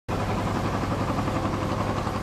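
Engine of a laden cargo boat running steadily as it motors past on the river: an even, low hum.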